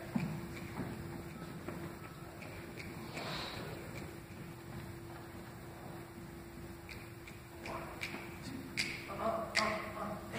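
Quiet concert hall before a jazz band starts: faint shuffling and small knocks as the players settle and raise their instruments, over a faint steady hum. A few sharper clicks and knocks come close together in the last two seconds.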